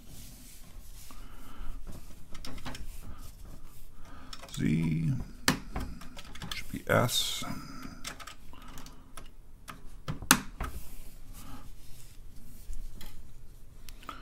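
Keys on a TRS-80 Model 4 computer keyboard being pressed in an uneven string of clicks, with two louder clacks. The keys are being tested after their keycaps have been refitted. A man's voice murmurs briefly a few seconds in.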